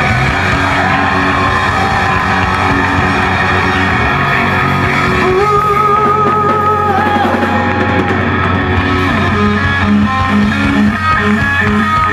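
Live hard rock band playing loudly: distorted electric guitar, bass and drum kit with sung vocals, and a long wavering note held about halfway through.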